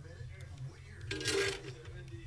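A brief scraping, clinking noise of a metal tool working on the guitar's hardware, lasting about half a second a little after a second in. Under it run faint background talk from a radio or podcast and a steady low hum.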